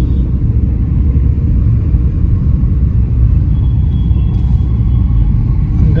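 Steady low rumble inside the cabin of a petrol Maruti Brezza on the move: road and engine noise while driving.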